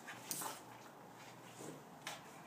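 A Boston terrier giving one short, sharp vocal sound about a third of a second in, while jumping up excitedly.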